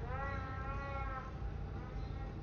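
Distant snowmobile engine revving on the hill, one pitched note of about a second that rises and then eases off, over a steady low rumble.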